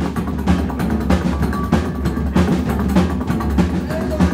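Psychobilly band playing live: a drum kit keeps a steady beat over a double bass and guitar.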